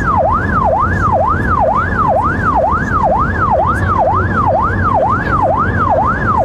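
Emergency-vehicle electronic siren yelping, its pitch sweeping down and back up about twice a second, over a low road and engine rumble.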